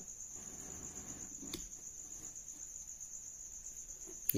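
A faint, steady high-pitched trill runs continuously under the pause, with a single soft click about one and a half seconds in.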